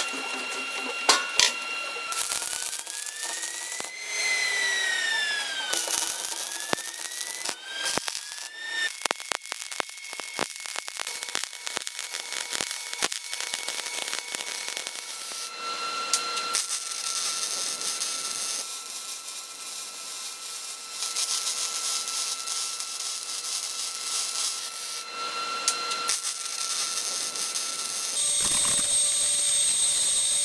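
A run of metal-shop work sounds on a steel smoker: clicks and rising and falling whines from tools in the first several seconds, then a long stretch of steady hissing crackle from arc welding on the firebox-to-tank joint.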